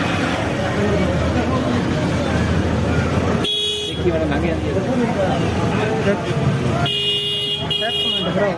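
Busy market street noise with background voices, and a vehicle horn sounding twice: a short toot about three and a half seconds in and a longer one of about a second near the end.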